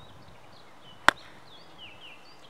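A golf iron striking a ball on a full swing: one sharp click about a second in.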